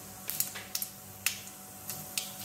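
Cumin and other whole seeds crackling in hot oil in a steel pan: irregular sharp pops, several a second, over a faint steady hum.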